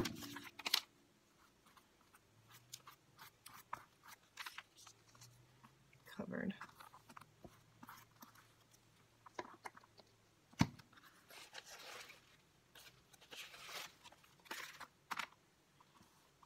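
Quiet, scattered rustling, crinkling and tearing of paper as collage pieces are handled and pressed onto old book pages, with a sharp tap about ten and a half seconds in.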